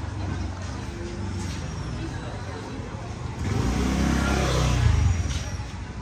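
A motor scooter's small engine passing close by: it swells about three and a half seconds in, peaks, then drops away about five seconds in. Low traffic hum runs underneath.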